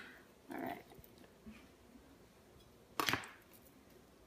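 Kitchen handling noises while an avocado is cut and peeled: a short soft sound about half a second in, then a single sharp knock about three seconds in, the loudest.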